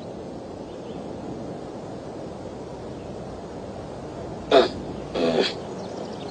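Steady hiss of an old film soundtrack, broken near the end by two short vocal sounds from a person, about half a second apart.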